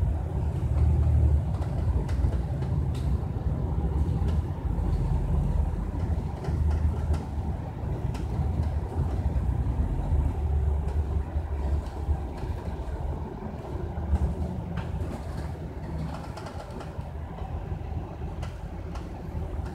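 MAN ND323F (Lion's City DD) double-deck bus running along the road, heard from inside the upper deck: a steady low engine and road rumble with occasional faint clicks, growing quieter in the last few seconds.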